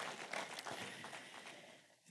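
Faint, scattered clapping from a congregation, dying away to silence near the end.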